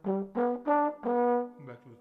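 Slide trombone playing a short jazz phrase: a few quick notes, then one longer held note about a second in.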